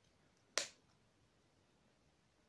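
A single sharp click about half a second in, fading quickly, against near silence.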